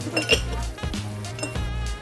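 Glasses clinking a few times on a bar counter over background music with a deep bass line.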